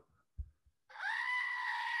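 A novelty goat figurine toy plays a recorded goat scream: one long, high, steady bleat lasting nearly two seconds. It follows a brief low bump about half a second in.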